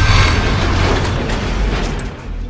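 Logo-reveal sound effect: a loud rush of noise packed with rapid mechanical-sounding clicks over a low rumble, loudest near the start and slowly dying away.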